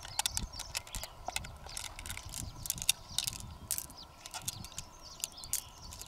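Small pearls clicking against one another in the hand as fingers work them out of a freshwater mussel's flesh: quick, irregular clicks, several a second.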